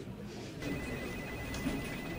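Office telephone ringing: a single long electronic ring on two steady pitches that starts about half a second in, over a low bustle of office activity.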